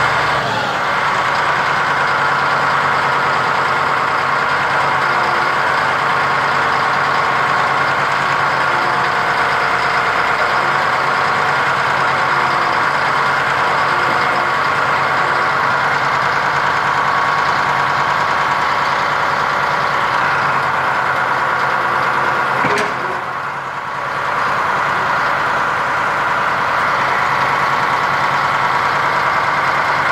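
Caterpillar D6H crawler dozer's six-cylinder diesel engine idling steadily, with a short dip in level about three-quarters of the way through.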